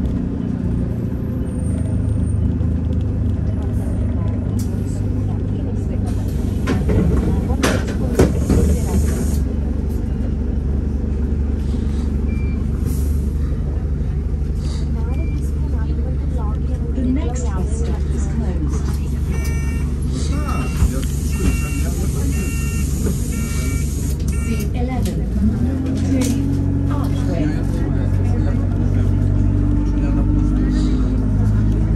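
Inside a diesel single-deck bus (Alexander Dennis Enviro200): the engine drones steadily with cabin rattles and knocks. A run of about six short beeps sounds from about 19 to 24 seconds in, and about 26 seconds in the engine note rises as it gathers speed.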